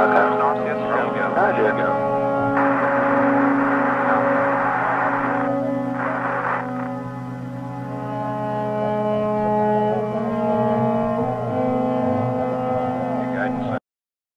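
Apollo air-to-ground radio audio over a steady low drone: faint, garbled radio voices near the start and again late on, with a burst of radio static from about two and a half to five and a half seconds in and another brief one at about six seconds. Everything stops abruptly just before the end.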